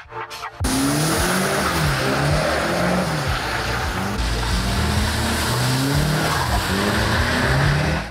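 Nissan S15 Silvia drifting on wet pavement: the engine revs up and down again and again as the throttle is worked, over a loud, steady hiss of spinning tyres on the wet surface. It starts suddenly about half a second in.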